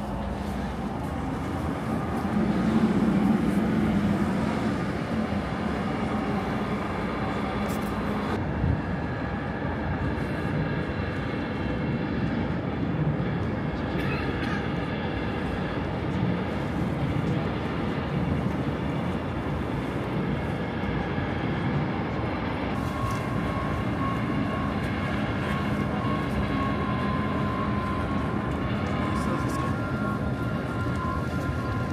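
A steady machinery drone with people's voices over it, swelling briefly a couple of seconds in.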